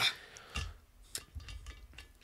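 Faint knock about half a second in, then a light click and small ticks: a drink being put down on a table after a gulped toast.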